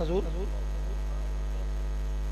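Steady electrical mains hum from the sound system, with a short voice sound at the very start.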